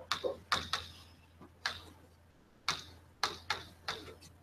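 Chalk writing on a blackboard: a string of sharp taps and short scratches, about ten strokes in irregular clusters.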